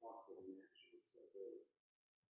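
Near silence with a faint, muffled voice murmuring away from the microphone for the first second and a half, then stopping.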